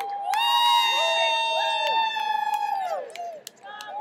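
Arena crowd cheering and yelling for the winner of a wrestling match, several voices holding long shouts over one another, with scattered claps. The cheering peaks early and fades a little near the end.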